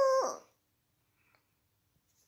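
A dog's high, steady whining howl that stops about half a second in.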